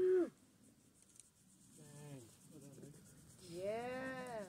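Wordless human vocal calls: a loud short holler at the start, two quieter calls around two seconds in, and a drawn-out rising-and-falling call near the end.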